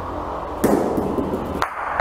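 Bocha balls colliding in a rafada: a thrown ball strikes a ball on the court with one loud, sharp crack about half a second in, followed by a second, lighter knock near the end.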